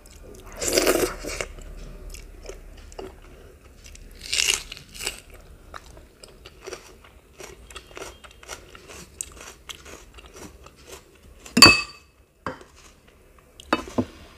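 Close-up chewing and crunching of crisp fried food eaten by hand, with two louder crunching bites, one about half a second in and one about four seconds in, and soft mouth clicks between. Near the end comes a sharp, ringing clink of dishware, the loudest sound, and another sharp knock just before the end.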